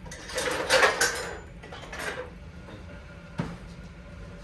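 Dishes and cooking utensils clattering on a kitchen counter, loudest about a second in, followed by a single sharp knock near the end.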